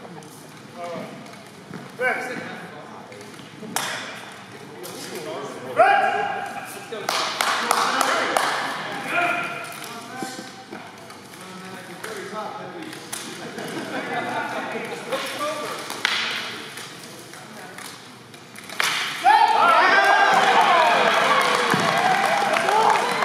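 Knocks and clacks of long staff weapons striking each other and armour during a fencing bout, with sharp shouts between blows. About three seconds before the end, a loud burst of shouting and cheering from the onlookers.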